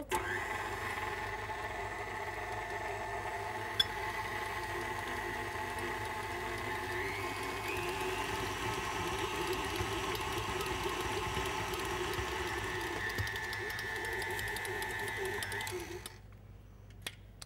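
KitchenAid Artisan tilt-head stand mixer running, its motor giving a steady whine as the dough hook kneads bread dough in the steel bowl. It stops near the end.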